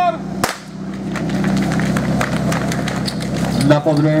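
A starting-pistol shot about half a second in, then a run of sharp clacks and knocks as the team grabs and carries hoses and gear. Underneath runs the steady hum of the portable fire pump's engine, and a shout comes near the end.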